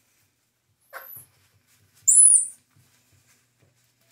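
Baby squirrel monkey calling: a short, faint squeak about a second in, then a louder, very high-pitched call lasting about half a second.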